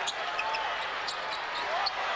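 Arena crowd noise, a steady roar, with a basketball being dribbled on a hardwood court.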